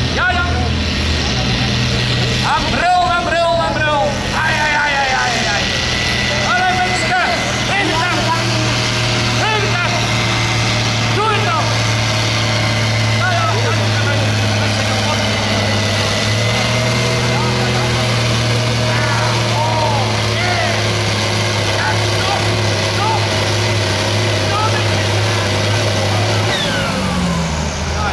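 Ford TW-20 tractor's turbocharged six-cylinder diesel engine running steadily under heavy load as it pulls a sled down the track. Its revs lift slightly midway, then fall away near the end.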